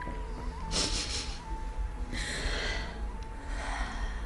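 A woman crying: three sniffling, gasping breaths, each about a second and a half apart, over a steady high background tone.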